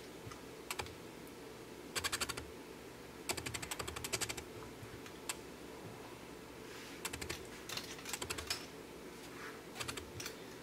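Quick runs of small clicks from the drone's handheld remote control and its clip-on phone holder being handled. There are four bursts of rapid clicking, the longest about a second, with a few single clicks between.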